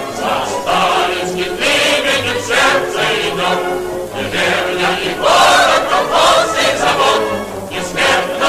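Music with a choir singing, continuous and rhythmic, on an old film soundtrack.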